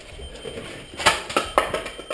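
A quick run of sharp knocks and clatter starting about a second in and lasting most of a second.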